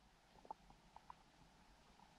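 Faint short pops and clicks, about five in quick succession in the first half, over near silence, as heard in a forest pond.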